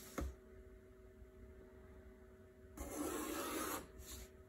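Pencil and metal ruler on paper: a short knock just after the start as the ruler is set down, then about a second of faint scratchy rubbing near the end as a line is drawn along the ruler.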